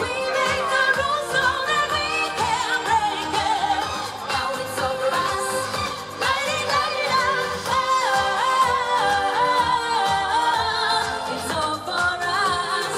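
A woman singing live into a microphone over a pop song with a steady beat, her sung line wavering and held on long notes.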